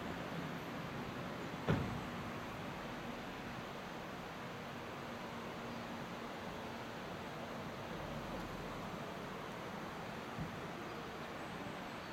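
Steady outdoor background noise with a faint low hum, broken by one sharp knock about two seconds in and a smaller one near the end.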